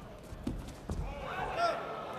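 Wrestlers' feet and bodies thudding on the mat as a kurash throw takes both fighters down, two dull thuds about half a second apart, followed by a shouted voice.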